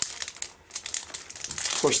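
A sealed baseball-card pack wrapper crinkling as a stack of cards is pulled free and handled, in two short spells of rustling with a brief lull about half a second in.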